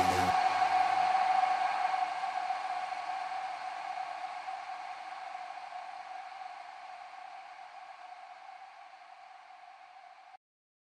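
The closing tail of an electronic dance track: one held mid-pitched synth tone over a hiss of noise, fading away slowly until it is barely audible.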